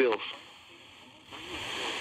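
Radio broadcast voice cutting off, a second of near quiet, then a steady hiss of radio static setting in a little over a second in.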